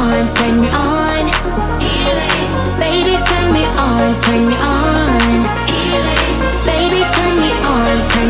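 Background music: a pop song with a steady beat and bass line.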